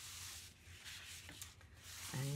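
Faint rustling and rubbing of scrapbook pages slid across a cutting mat, in two soft swishes.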